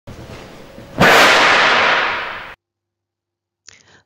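Intro logo sound effect: a faint hiss, then a sudden loud crack-like noisy hit about a second in that fades over about a second and a half and stops abruptly.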